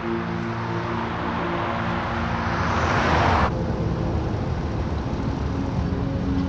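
Road noise of a car passing by, swelling over about three seconds and then cutting off suddenly. It is followed by a lower, steady driving hum.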